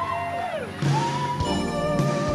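Live band music: held high notes slide downward and fade, then a new sustained note comes in with bass just under a second in, and the fuller band joins about halfway through.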